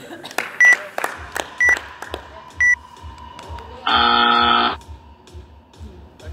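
Gym workout timer counting down: three short high beeps a second apart, then a longer, lower buzzer tone a little under a second long as the clock reaches the minute. Background music with a steady beat plays under it.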